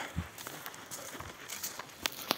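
Soft, uneven footsteps of a person walking over leaf litter and twigs on a forest floor, a few light thuds with faint rustling.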